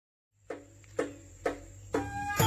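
Brief silence, then a steady low hum and four sharp taps evenly spaced about half a second apart: a band's count-in just before the caklempong ensemble starts playing.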